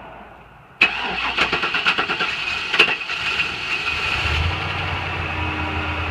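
A 2000 GMC Sierra pickup's engine being started: the starter cuts in suddenly about a second in and cranks with an uneven clatter, and around four seconds in the engine catches and settles into a steady idle.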